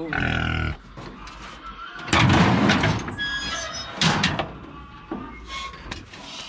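A large domestic pig squealing in loud bursts while it is handled in a metal cage, the loudest about two seconds in.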